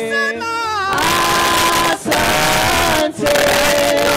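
A large mixed choir of men and women singing a Swahili worship song, holding long notes phrase by phrase with short breaths between phrases.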